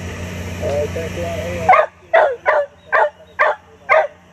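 Radio receiver hiss and hum with a faint distant voice, cut off suddenly a little under two seconds in; then a dog barks six times in quick succession, about two barks a second.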